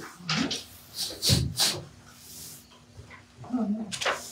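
A few short rustles and knocks from people handling hymnals in a small room, with a brief murmured voice about three and a half seconds in.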